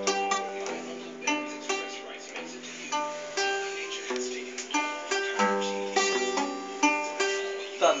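Guitar being picked note by note in a slow arpeggio, a few notes a second, each ringing over a changing bass note.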